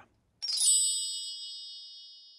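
A single bright chime struck once about half a second in, ringing with several high tones and fading away slowly: a section-transition sound effect.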